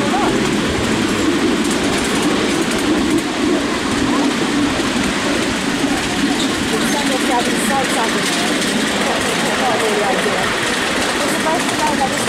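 Miniature railway train under way behind a miniature steam locomotive: a steady running noise of the carriage wheels on the track.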